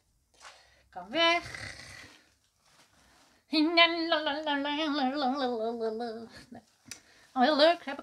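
A woman singing a wordless tune: a short rising note about a second in, then a long wavering note held for nearly three seconds that slides slowly down.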